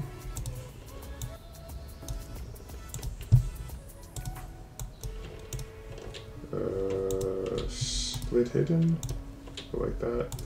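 Computer keyboard and mouse clicking in quick, irregular taps, with one louder knock a little over three seconds in. Held tones sit under the clicks in the second half.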